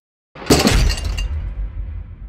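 Logo intro sound effect: a sudden loud crash hit about half a second in, its bright top end dying away over about a second, over a low rumble that carries on.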